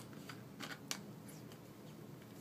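Faint handling of a small plastic saline bottle: three sharp clicks in the first second, then light rustling.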